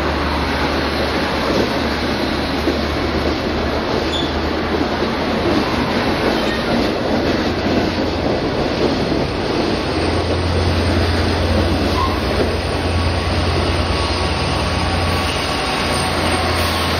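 Double-deck passenger train passing close by at speed: a steady loud rush and rumble of steel wheels on the rails. A low hum grows stronger about ten seconds in.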